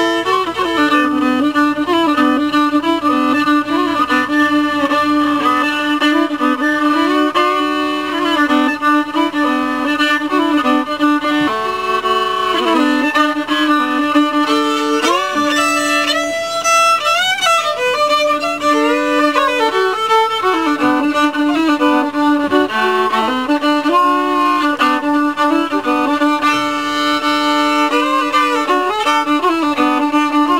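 Solo fiddle playing an unaccompanied tune in D. A steady drone note sounds under the bowed melody, with sliding notes about halfway through.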